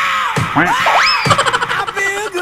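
Loud comic sound effect of repeated boings, each one bending up and then down in pitch about twice a second. About a second in comes a quick rising whistle, followed by a fast rattle of clicks.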